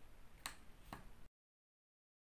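Two short, faint clicks about half a second apart over low room tone, then the sound cuts off to dead silence.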